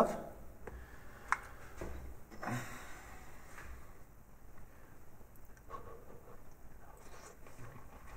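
A person eating from a plastic food tray with a metal fork: one sharp click about a second in, then low, soft handling and eating noises.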